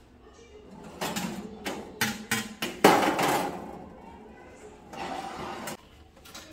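Knocks and clatter of a glass baking dish being pulled off a countertop toaster oven's wire rack and set down on a metal tray: several sharp knocks, the loudest near the middle.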